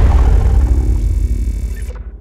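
Sound effect of an animated outro logo: a deep bass rumble that slowly fades away, with its high end cutting off just before the end.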